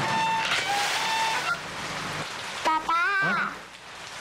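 Steady hiss of heavy rain that drops away about two seconds in, followed by a short vocal cry.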